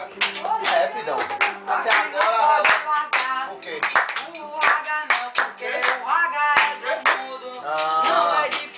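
Rhythmic hand clapping by a small group, over a strummed acoustic guitar and voices singing along. The claps are the sharpest and loudest sounds, several a second.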